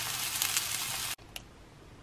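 Sausages sizzling in a non-stick frying pan, a steady hiss that cuts off suddenly just over a second in, leaving only quiet room tone.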